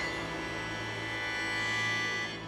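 Sheng (Chinese free-reed mouth organ) holding a dense cluster of steady high tones, with a low note sustained underneath.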